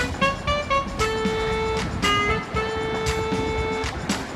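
Background music: a melody of quick short notes alternating with long held notes, over a steady beat.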